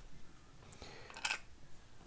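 Faint handling noise from a small metal radio dial assembly turned in the fingers: a few light clicks and a brief rustle just past halfway.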